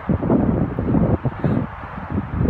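Wind buffeting the microphone: a gusty, uneven low rumble that rises and falls in quick surges.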